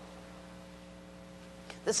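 Steady electrical mains hum, a low drone made of a few held tones, running unchanged through a pause in speech.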